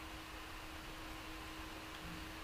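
Quiet room tone: a steady hiss with a faint steady hum underneath.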